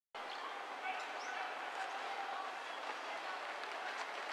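Faint distant voices over a steady outdoor hiss, with a few light taps.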